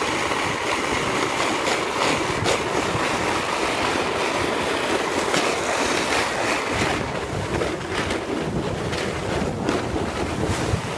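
A sled sliding and scraping over icy, crusted snow, a steady rushing hiss mixed with wind on the microphone. About seven seconds in, the sound turns rougher and lower as the sled runs off onto snowy grass.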